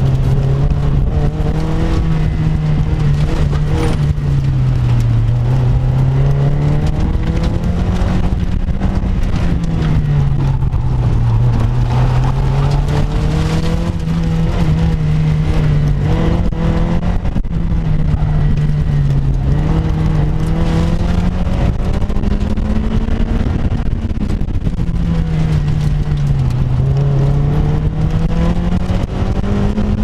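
Car engine heard from the open cockpit during an autocross run, its revs rising and falling over and over as the car accelerates and slows through the cones, with steady wind and road rumble underneath.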